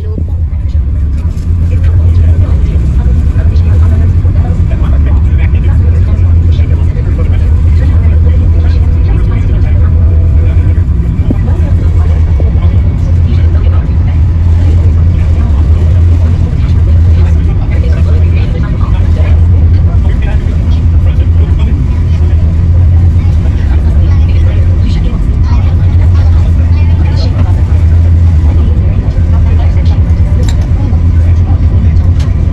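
Tour boat's engines running at cruising speed, a loud, steady low rumble heard from inside the passenger cabin.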